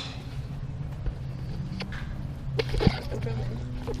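A golf club striking a ball on a driving-range mat, one sharp crack about three seconds in, with a couple of fainter clicks just before it. A steady low hum runs underneath.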